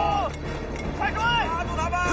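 A man shouting commands to stop and seize fugitives. A long held yell breaks off just after the start, and short sharp shouts follow about a second in, over a steady low hum.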